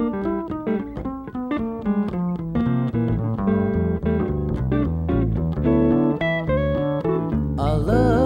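Jazz guitar solo on a Telecaster-style electric guitar, picked single-note lines in a light swing, over an upright double bass.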